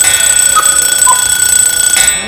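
A loud, steady, high-pitched electronic beep, one unbroken tone that cuts off at the end.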